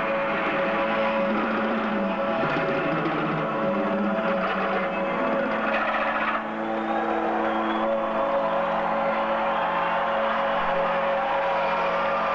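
Live rock concert sound: long sustained keyboard chords and drone tones with no beat, over a steady wash of hall noise.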